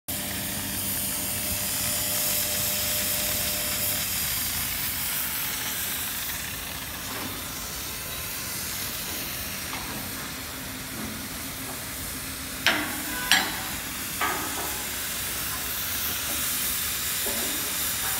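Oxy-fuel cutting torch of a pug cutting machine hissing steadily as its oxygen jet cuts through a mild steel plate. Three sharp knocks come about two thirds of the way through.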